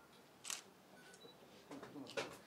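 Camera shutter clicks: one sharp click about a quarter of the way in and a softer one near the end, in a quiet room.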